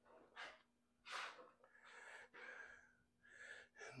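A series of faint breaths, soft puffs about a second apart.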